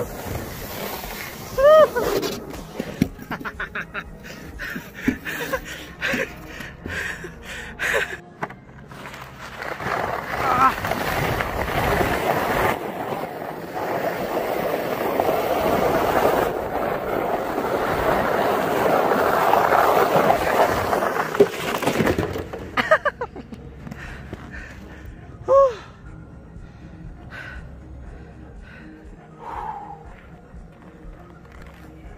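Sled sliding fast down a snowy slope: a scraping hiss of the sled on packed snow that builds for about twelve seconds and stops suddenly near the end of the run. A man's short excited yells come in a few times.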